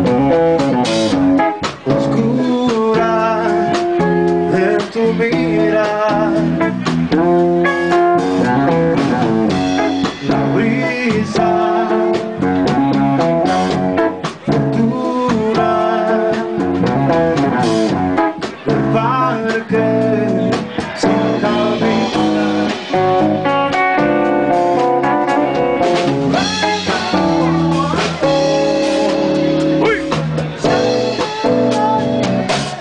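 Live band music: a guitar and a drum kit playing a song together with a sung vocal line, at a steady loud level.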